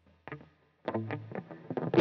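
A few short, soft picked notes on a Hamer Slammer Series electric guitar, starting about a second in after a near-silent pause.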